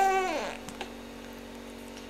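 A voice's drawn-out sound, falling in pitch and fading out about half a second in. Then it goes quiet except for a faint steady hum.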